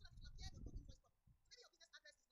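Faint, indistinct voice-like sounds in short chopped bits, fuller for about the first second and then thinning to a few brief snippets.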